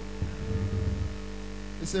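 Steady electrical mains hum through the microphone and sound system, with a short low rumbling flutter lasting under a second about a quarter second in.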